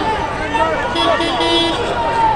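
Street crowd talking, with a vehicle horn sounding one steady, held honk about a second in that lasts under a second.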